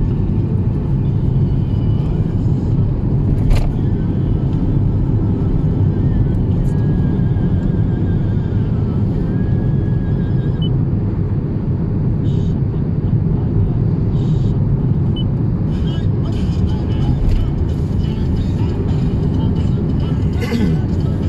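Steady low rumble of a car's engine and tyres heard from inside the cabin while driving, with one sharp click about three and a half seconds in.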